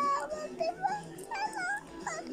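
An infant cooing and babbling: several short, high-pitched vocal sounds that rise and fall in pitch, with short pauses between them.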